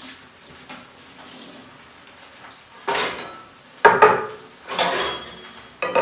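Dishes and crockery clattering at a kitchen sink as they are handled and washed: quiet at first, then a run of clinks and knocks in the second half, with two sharp knocks about four seconds in.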